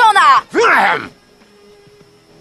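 Cartoon voices: the tail of a shouted line, then a loud vocal cry that falls steeply in pitch and breaks off about a second in. After it only faint, steady background music is left.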